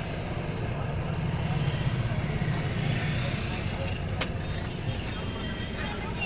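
Steady low rumble of a car's engine and road noise heard from inside the cabin, with a single sharp click about four seconds in.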